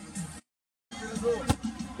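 A football kicked once, a single sharp thud about a second and a half in, over faint background music. The sound drops out completely for half a second shortly before the kick.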